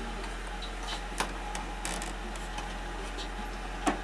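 A few isolated clicks from a computer mouse being worked, over a steady low hum.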